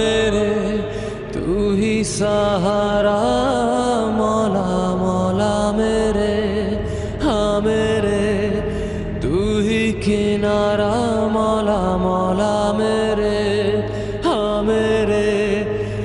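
Background music: a voice holding long, wavering, ornamented notes over a steady low drone.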